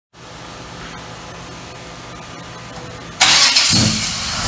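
1964 Chevelle's aluminum-headed 383 cubic-inch stroker V8 being started. A low steady hum runs for about three seconds, then a sudden loud burst of cranking comes in, and the engine catches about half a second later, near the end.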